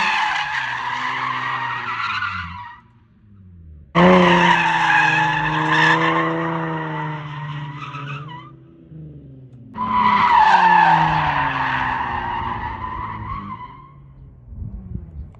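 Nissan 350Z sliding through spins: tires squealing loudly over the V6 engine revving. This comes in three bursts of a few seconds each, with short lulls between them.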